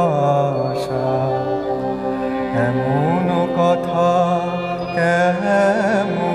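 A male voice singing a slow, chant-like melodic line, with long held notes sliding between pitches, over a steady drone.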